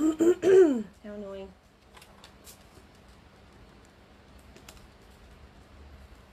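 A woman's short wordless vocal sound, rising then falling in pitch, followed by a brief hum. Then come a few faint, scattered light clicks. No sewing machine is running.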